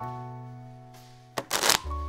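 Background music with a held low note that fades; about one and a half seconds in, a deck of playing cards is riffle-shuffled in a short, loud burst.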